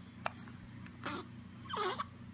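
Newborn baby making a brief soft whimpering sound near the end, with a small click about a quarter second in, over a steady low hum.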